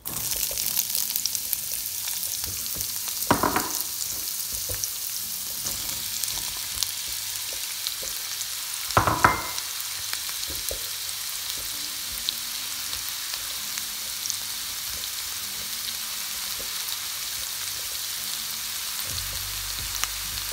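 Chopped onion drops into hot oil in a pan and sets off a sudden, steady sizzle, and carrots and green pepper go on frying in it. Two brief louder sounds come at about three and nine seconds in.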